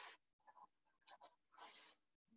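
Near silence, with a few faint brushing scrapes of hands and a set of parallel rules sliding over a paper chart: one just at the start and a longer one near the end.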